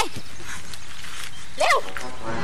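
A woman's short, high-pitched yelp near the end, over a steady background hiss.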